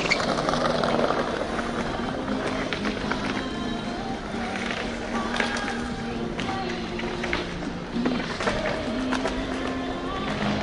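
Live music from a small group of musicians, with steady held notes under a run of shorter picked notes.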